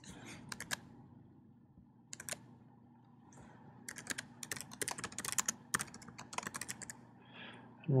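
Typing on a computer keyboard: a few separate keystrokes in the first couple of seconds, then a fast run of typing in the middle.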